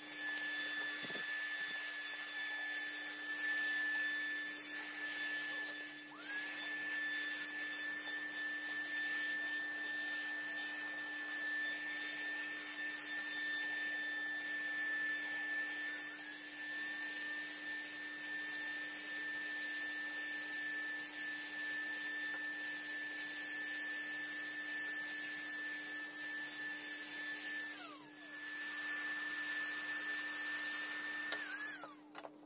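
Small cordless handheld vacuum running with a steady high-pitched whine as its nozzle works over a leather bag's suede lining. About six seconds in, and again near the end, the motor briefly drops in pitch and spins back up.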